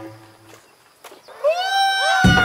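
A music beat stops about half a second in. After a short lull, a loud, high-pitched, drawn-out cry starts near the end; it wavers and dips in pitch at first, then holds steady.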